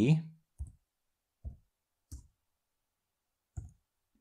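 Four separate computer keyboard keystrokes, about a second apart, with silence between them as code is typed.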